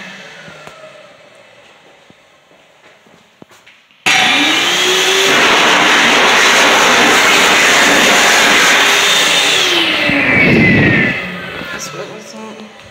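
Stainless-steel electric hand dryer. A falling motor whine dies away, then about four seconds in the dryer starts suddenly and blows loudly and steadily for about six seconds. It cuts off with its motor whine sliding down in pitch as it spins down.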